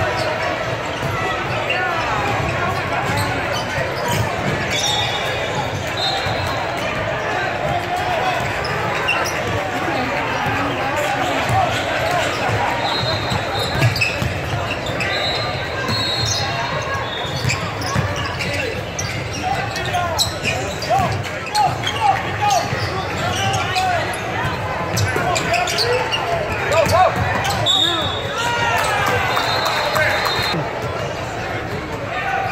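Basketball game in a reverberant gym: overlapping voices of players and spectators, a basketball bouncing on the hardwood court, and short high squeaks of sneakers on the floor now and then.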